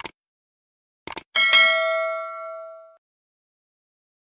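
Subscribe-button animation sound effect: a mouse click at the start, two quick clicks about a second in, then a single bell ding that rings out and fades over about a second and a half.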